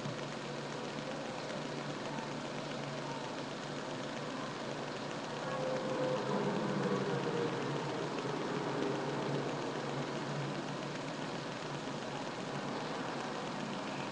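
Steady background noise: an even hiss with a faint low hum, a little louder in the middle.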